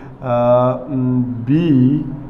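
Speech only: a man's voice calling out the letters of a triangle's corners, holding each syllable long and drawn out.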